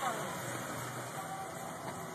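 Steady car noise with indistinct voices.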